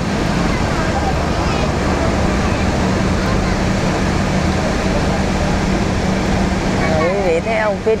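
Car ferry's engine running with a steady low drone and hum. Voices come in near the end.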